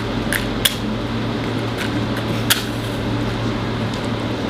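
A few light clicks and taps from a cardboard safety-match box being opened and a match being taken out, four in all and spread over about two and a half seconds. A steady low hum of an air conditioner runs underneath.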